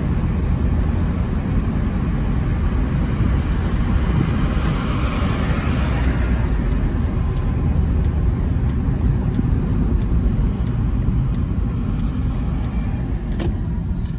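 Steady road and engine rumble heard inside a moving car's cabin, with a swell of louder hiss in the middle, from about four to seven seconds in.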